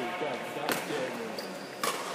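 Two sharp cracks of badminton rackets striking a shuttlecock, about a second apart, during a rally, with people talking in the background.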